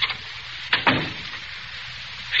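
A door being shut, heard as one short knock a little under a second in, over the steady hiss of an old radio recording.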